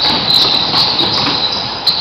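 Ambience of an indoor basketball game in a large gym: a steady high-pitched hiss over faint court noise, with one sharp click near the end.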